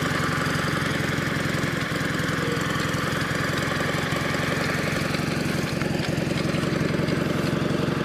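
Gravely 812 garden tractor engine running steadily, with an even firing pulse.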